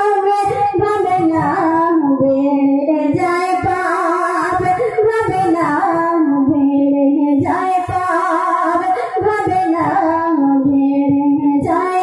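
A young woman singing a Bengali gazal solo into a microphone, holding long notes that slide from one pitch to the next.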